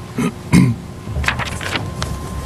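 A person clearing their throat into a microphone, a few short rough bursts with the loudest about half a second in, over room noise.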